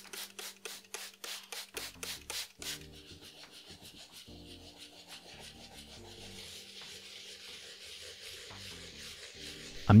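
Stiff bristle scrub brush scrubbing a wet, soapy leather sneaker upper. Quick back-and-forth strokes, about five a second, for the first couple of seconds, then a softer, steadier scrubbing hiss.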